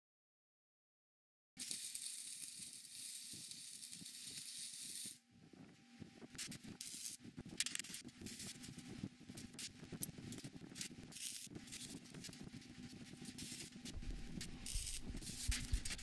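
MIG welder running welds along the corners of a stacked steel billet: a few seconds of steady hiss, then irregular crackling and sizzling in short uneven bursts.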